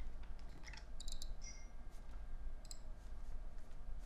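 Computer mouse buttons clicking: a few scattered clicks and quick pairs of clicks, over a low steady hum.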